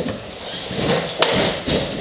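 Wavemaster XXL free-standing heavy bag tipped onto the edge of its plastic base and rolled across the floor: a rough rumble with several knocks, the sharpest about a second and a quarter in, as the base is swung round and set back down.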